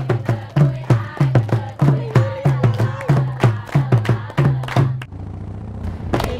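A group of schoolgirls chanting a cheer to hand claps and conga drum beats, an even beat of about three strokes a second. It stops abruptly about five seconds in.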